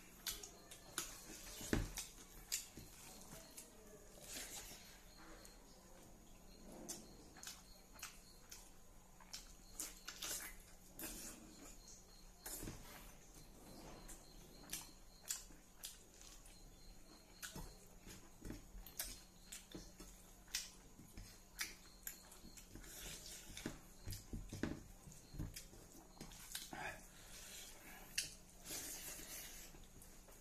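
Close-up mukbang eating sounds: a person chewing and smacking on mouthfuls of rice and smoked pork, with many short, faint clicks of wet mouth noise and fingers mixing rice in a steel plate.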